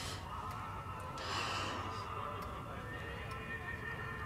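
A mantel clock ticking about once a second, with a person's long breathy sigh a little over a second in.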